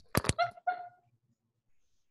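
Two sharp clicks in quick succession, like a wired earbud microphone being handled as the earbuds are pulled out, followed by a short laugh.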